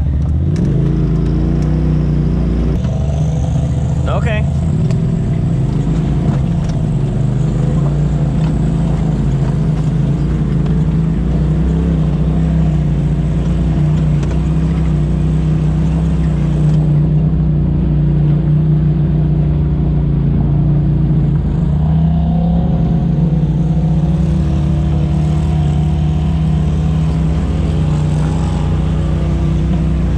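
Polaris RZR side-by-side engine running steadily at about 3,800 to 4,000 rpm while the machine drives a dirt trail at low speed, heard from inside the open cab along with drivetrain and tyre noise.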